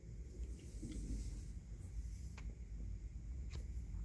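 Faint handling noise from a handheld recording: a low, steady rumble with a couple of faint light clicks as the view is moved over the teacup.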